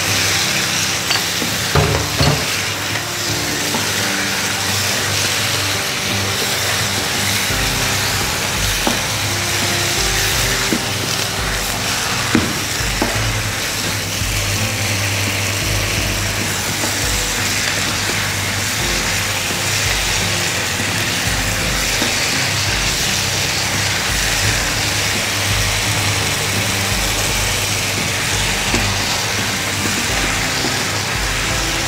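Chunks of marinated beef with garlic and shallot sizzling steadily in hot oil in a frying pan, being seared so the meat firms up. A wooden spatula stirs them and knocks against the pan a few times.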